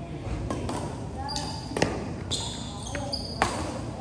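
Badminton rally: a few sharp racket hits on the shuttlecock, with short high-pitched squeaks of shoes on the court floor between them and voices in the background.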